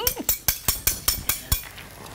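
Metal cutlery clicking and clinking against a plate, a rapid run of sharp clicks that stops about one and a half seconds in.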